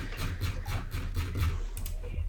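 Rapid run of light clicks from working a computer's controls, over a low steady hum.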